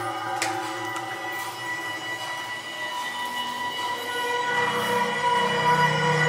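Sustained drone of several steady tones layered together from the maze's soundtrack, with a faint click shortly after the start. A lower hum joins about four and a half seconds in, and the sound grows louder toward the end.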